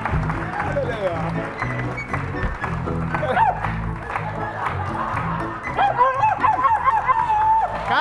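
The studio band plays a tune with a bass line stepping from note to note, and voices call out over it, most clearly in the second half.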